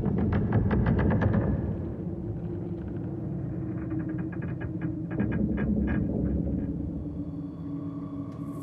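Dramatic film soundtrack: a steady low rumble with two runs of rapid rattling clicks, about seven or eight a second, one in the first second and a half and one from about four to six and a half seconds in.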